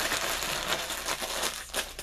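Clear plastic zip-lock bag crinkling as hands press and handle it. The crinkling thins out and quietens near the end.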